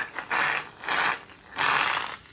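Aerosol can of hair mousse dispensing foam in short hissing spurts, about three in two seconds.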